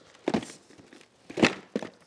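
Small cardboard product boxes being handled: a few short scuffs and knocks as they are lifted out of a cardboard carton and set down, the loudest about a second and a half in.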